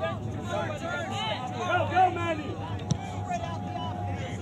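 Indistinct shouts and calls of players and sideline spectators at an outdoor soccer match, loudest about two seconds in, with one sharp knock just before three seconds.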